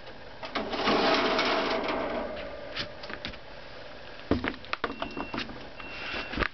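Handling noise from an unplugged electronic air cleaner (electrostatic precipitator) being opened up to expose its collector cell. It starts with a rushing scrape of about two seconds, then a run of light clicks and knocks near the end.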